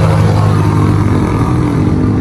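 An engine running steadily nearby: a loud low hum that holds one pitch throughout.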